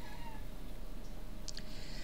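Quiet room tone with a faint steady hum. Right at the start there is a brief faint high-pitched squeak-like call, and about one and a half seconds in a few soft clicks.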